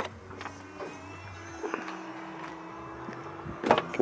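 Mercedes-Benz ML350's electric tailgate powering shut after its close button is pressed: a click, the steady whir of the tailgate motor, then a loud thud as it latches near the end.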